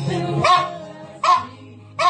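A small long-haired terrier 'singing' with its head back: two short, high yipping calls, one about half a second in and one just over a second in, over steady music.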